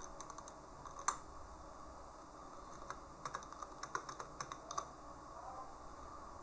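Faint clicking of computer keys: a single click about a second in, then a quick irregular run of clicks between about three and five seconds in.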